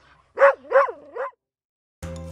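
A dog barking three times in quick succession, the last bark softer.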